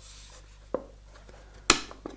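A small hardwood Japanese-style toolbox being handled: a light wooden tap about three-quarters of a second in, then a single sharp wooden click near the end.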